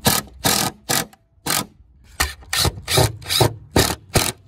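Ryobi cordless impact driver driving a wood screw into a wooden fence picket, run in about nine short bursts of its impact rattle, with a pause of about a second after the first few.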